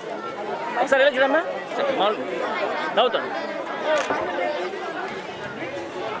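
Many people talking at once: overlapping crowd chatter with no single clear voice, and a couple of short sharp clicks.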